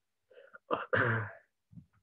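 A man clears his throat with a short, harsh burst about a second in, picked up by a video-call microphone.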